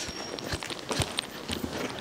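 Hoofbeats of a dressage horse going into canter on an indoor arena's sand footing: a handful of separate hoof strikes.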